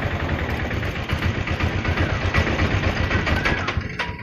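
An engine idling close by, a low uneven rumble.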